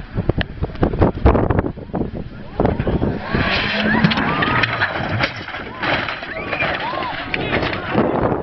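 A Ford Escort Mk2 rally car crashing off a stage. There is a run of sharp knocks and thuds in the first few seconds. From about three seconds in, a crowd of spectators shouts and screams in alarm as the car goes off and rolls.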